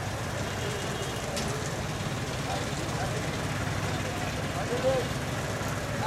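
A steady low engine rumble runs under scattered, indistinct voices of people talking nearby, with one short louder call about five seconds in.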